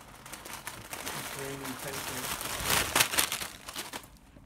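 Plastic crisp packets crinkling as they rustle against a face, with sharper, louder crackles about three seconds in.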